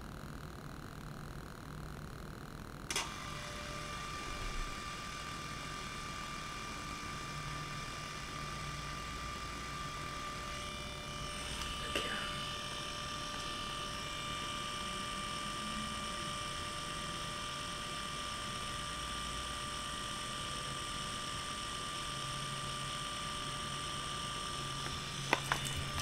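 Kodak portable photo printer printing a photo. A click about three seconds in, then its feed motor runs with a steady hum, with another small click about halfway through.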